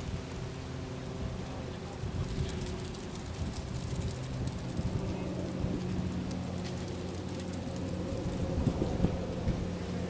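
Wind buffeting an outdoor microphone: a low rumble that rises and falls unevenly, over a faint steady hum.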